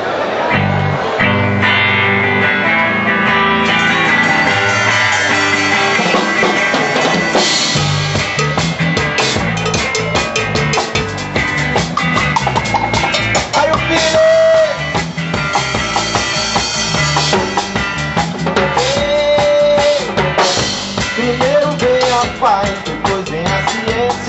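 Live band playing the instrumental intro to a reggae song, led by electric guitar. A full drum kit comes in about a third of the way through.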